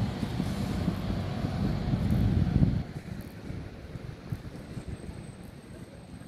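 Bus engine running close by, a low rumble mixed with wind buffeting the microphone; the rumble drops away suddenly about three seconds in, leaving quieter street noise.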